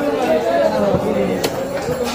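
Several people talking at once in the background: steady market chatter of overlapping voices, with one sharp click about one and a half seconds in.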